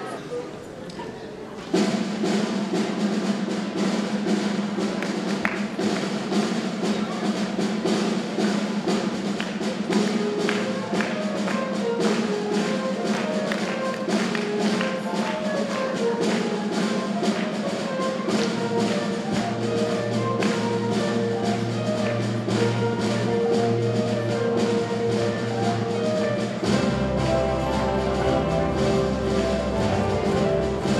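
School orchestra of violins, acoustic guitars and keyboard striking up a song about two seconds in, playing with a steady beat. A lower bass part joins past the halfway point and grows deeper near the end.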